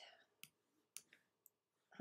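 Near silence with a few faint computer mouse clicks about half a second apart, made while moving and selecting items on screen.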